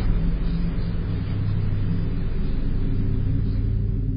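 A steady low rumble with a hum running under it, with no distinct knock or other event. It is heard through a low-quality security-camera microphone.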